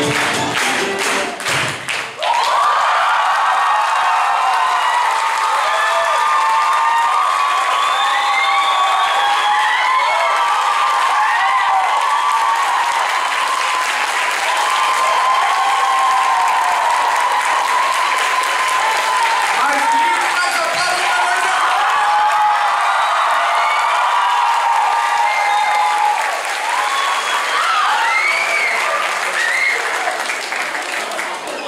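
Orchestra music ends about two seconds in with a few percussion strokes and a held chord, and an audience breaks straight into long, loud applause and cheering, with shouts and whoops over the clapping.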